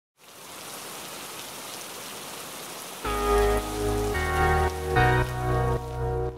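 Steady rain falling, an even hiss. About halfway through, music with sustained keyboard chords over a deep bass comes in and becomes the loudest sound, the chords changing every second or so while the rain carries on beneath.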